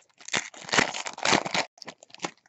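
Foil wrapper of a Bowman Draft baseball card pack crinkling and tearing as it is opened by hand: an irregular run of crackling rustles, loudest through the middle.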